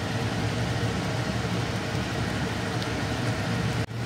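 Steady low hum under an even hiss, from a masala gravy cooking in an iron kadai on a kitchen stove. The sound drops out briefly just before the end.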